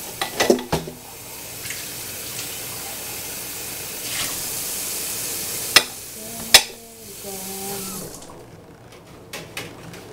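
Kitchen tap running into a sink during hand dishwashing, with two sharp clinks of dishes a little past halfway. The water shuts off about eight seconds in, leaving a few light clatters.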